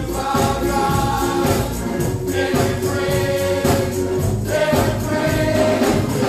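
Gospel music: a choir singing long held notes over a steady beat.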